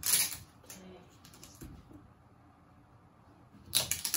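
Two brief rustling, scraping handling sounds of cut-out numbers being pulled off and pressed onto a wall, one at the very start and one just before the end, with quiet room sound between.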